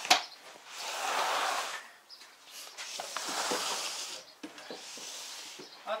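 Loading in an SUV's cargo area: a sharp knock at the start, then three long rustling, scraping sweeps as items are slid and shifted around the cargo floor.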